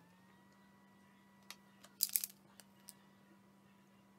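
A few small, sharp clicks and taps from handling a paintbrush and an acrylic paint pen on a work table, the loudest a quick cluster about halfway through, over a faint steady hum.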